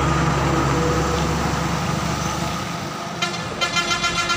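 A road vehicle's engine rumbling steadily, then fading away over the first three seconds. Near the end comes a short, even-pitched tone.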